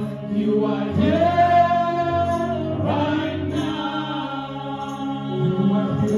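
Gospel worship singing: several voices singing together into microphones, holding long notes and sliding up into them.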